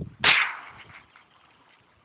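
A single shot from an AR-15 rifle chambered in .22 LR: one sharp crack about a quarter second in, its report trailing off over about half a second.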